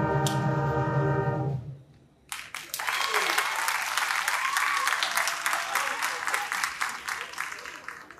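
A concert band of brass and woodwinds holds its final chord, which cuts off about one and a half seconds in. After a short pause, an audience applauds until near the end.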